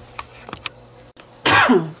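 A woman coughs once, a short cough falling in pitch about one and a half seconds in, preceded by a few faint clicks.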